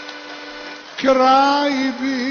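Live sevdalinka performance: a male voice sings with vibrato over instrumental accompaniment. A soft held note comes first, then a loud new phrase starts sharply about a second in.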